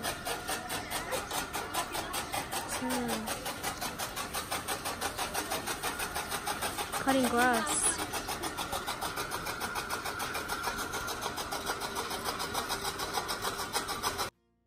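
A small engine running with a steady, rapid thumping of about four to five beats a second, with voices talking briefly.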